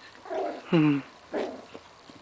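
Pomeranian puppy making short growls and yips while playing: three brief sounds in quick succession, the middle one loudest and dropping in pitch.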